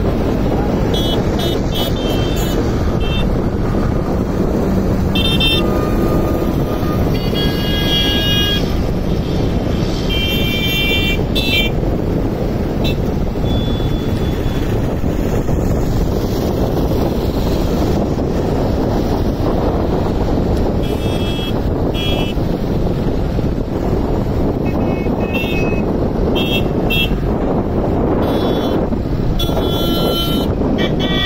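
Vehicle horns honking in short repeated bursts at several different pitches, over a steady din of road traffic. The honking thins out for a while in the middle.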